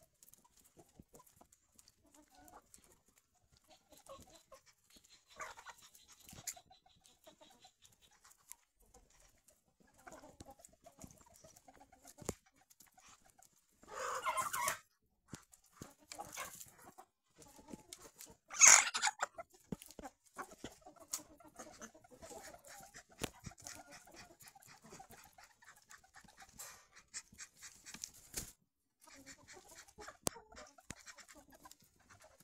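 Domestic chickens clucking intermittently in a flock, with light scattered clicks. Near the middle come two brief louder outbursts, the second the loudest.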